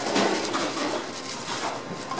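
Commercial kitchen room noise: a steady low hum with a few light knocks.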